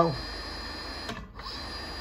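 Brushless servo motor of an industrial sewing machine running steadily with a thin high-pitched whine, which drops out briefly about a second in. It is running normally, with no error.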